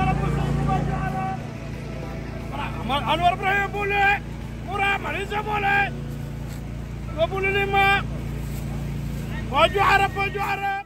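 Steady low drone of a vehicle on the move, with a person's voice coming in short spells over it.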